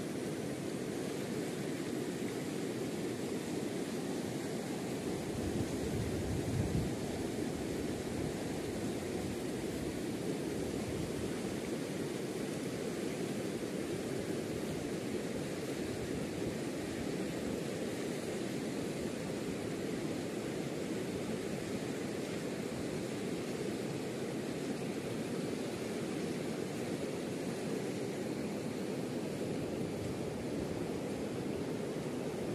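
Steady rushing of a fast-flowing mountain river, with a brief louder low rumble about six seconds in.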